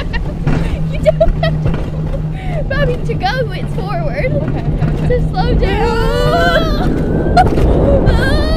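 Rocky Top Mountain Coaster sled running down its metal rail track: a loud rumble of wheels and rushing air, with a steady low hum through the first half. The two riders laugh and shriek over it, with a long wavering high cry about six seconds in.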